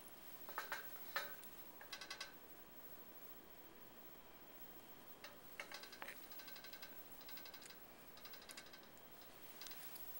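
Faint clicks and short rasps of plastic hair-setting tools: a comb drawn through wet hair and plastic rollers and clips being handled. There are a few click clusters, then several quick, evenly repeated rasps in a row in the second half.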